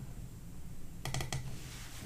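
A short run of computer keyboard keystrokes, a few quick clicks about a second in, over quiet room tone.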